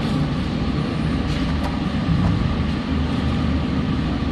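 Steady low rumble of workshop machinery.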